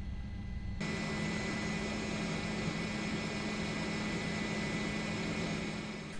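Steady helicopter engine noise: a low drone with a thin steady whine on top, which grows fuller and a little louder about a second in.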